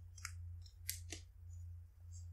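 Faint handling noises from a shelf: a few short clicks and scrapes as things are moved and a boxed card set is taken down, over a steady low hum.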